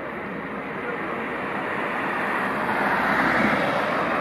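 A passing vehicle's rushing noise, swelling to a peak about three seconds in and then starting to fade.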